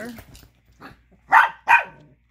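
Chihuahua puppy barking twice in quick succession: sharp, high yaps about a second and a half in, angry at the other dog over a small bone.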